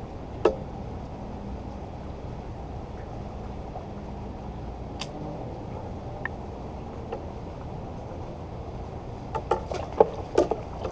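Steady low rumble of open-water background around a float tube, with a few scattered sharp clicks from tackle being handled. Near the end a quick run of clicks and knocks as the rod comes up and a fish is hooked and reeled.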